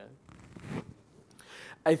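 A pause in a man's speech at a microphone, holding a short soft rustle about half a second in and a fainter one later, before his voice comes back in near the end.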